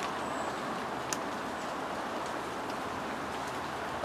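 Steady outdoor background rush, even and unbroken, with a single small click about a second in.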